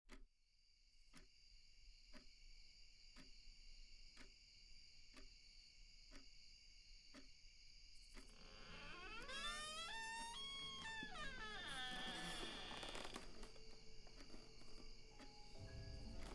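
Quiet horror-film sound design: a steady high hum and a soft tick about once a second, then, from about halfway, a swell of eerie gliding music tones that rise and fall.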